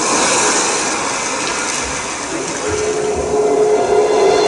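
Audience applause that thins out, then a backing track begins with a sustained note about three seconds in.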